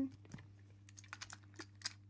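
Light, scattered clicks and taps of a plastic Gordon toy engine and its tender being handled and fitted together, the sharpest click near the end.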